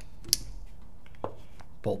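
A single sharp click about a third of a second in, then a fainter tap a little after a second: the Autococker's Delrin bolt pin being pulled from the back of the marker.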